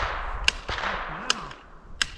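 Two gunshots at a distance, sharp single cracks a little under a second apart.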